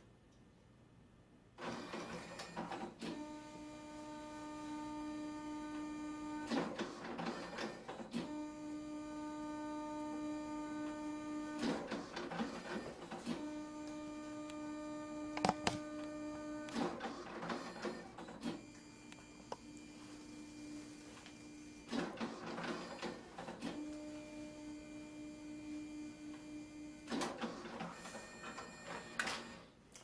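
Identicard Smart ID card printer, a dye-sublimation card printer, running a print job. After a short pause it makes five passes, each a steady motor whine, with noisier card-transport clatter between passes, and the printed card is fed out at the end.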